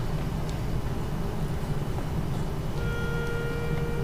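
Pitch pipe giving the choir its starting note: one steady, unwavering tone that begins about three seconds in. Under it is a steady low room rumble.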